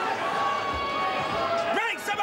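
Crowd noise and shouting voices in a boxing arena, with a couple of dull thuds of punches landing as the boxers work in a clinch, the first under a second in and the next about half a second later. A single voice rises in a shout near the end.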